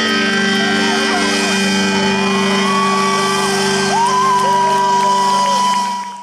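Live rock band holding a sustained chord at the close of a song, with electric guitar and drums. A high note slides up about four seconds in and is held over it, with shouts from the crowd.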